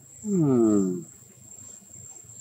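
Crickets giving a steady high trill, with a person's brief hum falling in pitch, lasting under a second near the start.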